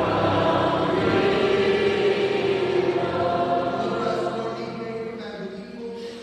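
Church singing by a group of voices, held notes that die away about five seconds in as the hymn ends.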